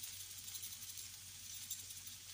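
Corned beef and onion frying in a pan on a gas burner: a faint, steady sizzle with light crackling.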